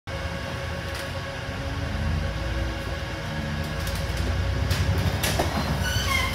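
Double-decker bus engine running with a steady low hum and a faint whine, heard inside the upper deck. A few clicks and knocks come in during the last second or so.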